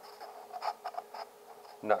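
Scissors cutting into a cardboard paper towel tube: a few faint, short scratchy snips and rustles of cardboard.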